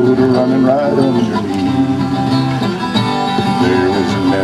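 Acoustic guitar strummed in a slow folk song, with a man's singing voice between the guitar passages.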